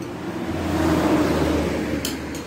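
A motor vehicle going past, its engine and road noise swelling to a peak about a second in and then easing off.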